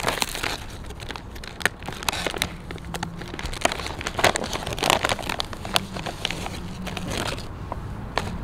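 Crinkling and crackling of a plastic snack-chip bag being opened and handled, in many sharp irregular crackles.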